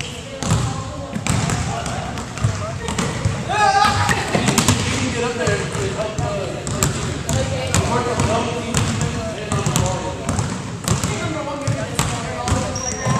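Basketballs bouncing on a hardwood gym floor, irregular dribble thuds from several balls, with people talking in the background.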